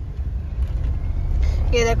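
Low, steady rumble of a car's engine and tyres on the road, heard from inside the moving car's cabin.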